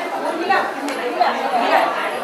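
Several voices chattering and talking over one another in a large hall.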